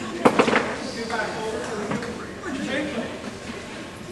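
Indistinct voices in a large hall, with a quick cluster of sharp knocks about a quarter second in.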